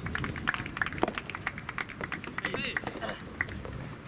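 People's voices calling out at the courts, in short rising-and-falling shouts, over many short sharp clicks that are densest in the first two seconds.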